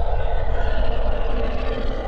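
Loud rumbling sound effect for an animated logo outro: a deep, steady rumble with a mid-pitched drone held over it.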